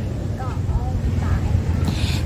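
Steady low outdoor rumble, with a few faint short voice sounds about half a second and a second and a half in.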